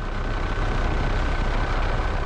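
Helicopter noise heard from aboard: a steady rotor and engine drone with a thin, steady whine above it.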